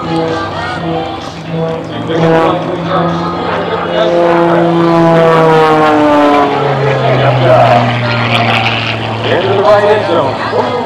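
Aerobatic plane's piston engine and propeller running at high power overhead, the pitch sliding down through the middle and settling to a lower, steady drone about two-thirds in.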